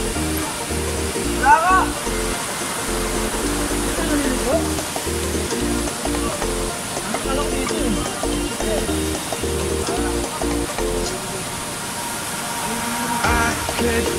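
Background music: a track with a steady pulsing bass and a repeating pattern of short notes, with singing coming in just before the end.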